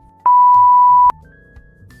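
A single loud electronic beep: one steady, high, pure tone lasting just under a second, starting and stopping abruptly, over soft background music.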